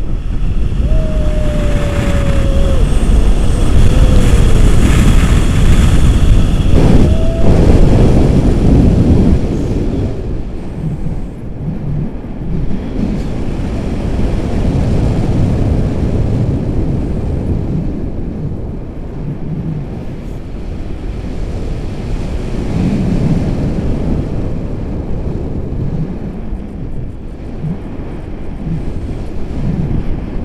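Wind rushing over the camera microphone during a tandem paraglider flight: a loud, steady low rumble of buffeting, strongest in the first ten seconds, then easing off.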